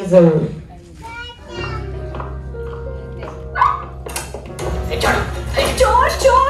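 A film clip's soundtrack playing over a theatre's speakers: music with held notes, joined about four seconds in by a louder, noisier passage with voices in it.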